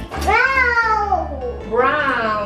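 A small child's high voice in two long sliding calls, the first falling in pitch, the second starting near the end, over background music.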